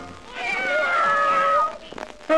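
A drawn-out meow on a 1960s ska record, heard in a break where the horn band stops. The call falls gently in pitch, and the band comes back in after it.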